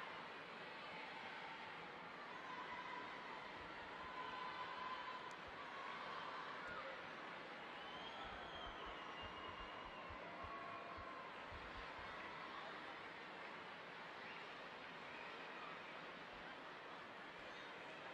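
Faint murmur of a large indoor arena crowd, with scattered voices calling out over it.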